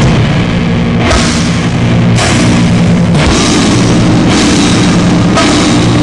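Loud heavy rock music with a drum kit, cymbal crashes coming about once a second over steady low chords.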